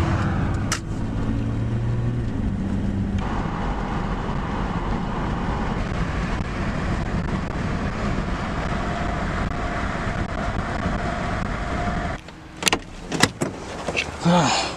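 Steady road and engine noise heard inside a moving car's cabin. About twelve seconds in it drops away to a quieter background, broken by a few sharp clicks from a car door being handled.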